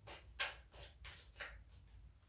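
A deck of tarot cards being shuffled by hand: faint soft flicks of the cards, several a second, with one louder slap about half a second in, over a low steady hum.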